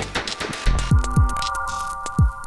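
Electronic logo sting: the rock track breaks off, then three deep booms falling in pitch come in quick succession about a second in, over a held electronic hum.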